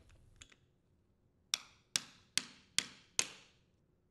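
Five sharp taps, a little over two a second, as the plastic drive coupler cog is tapped with a screwdriver handle onto the shaft of a direct-drive washer motor to seat it flush.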